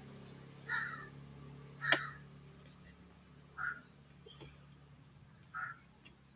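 A sharp computer mouse click about two seconds in, over a faint steady hum, with three short, faint harsh sounds spaced about two seconds apart.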